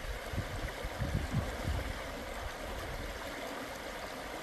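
Shallow river water running and rippling over stones, a steady rushing. A few low rumbles come in the first two seconds.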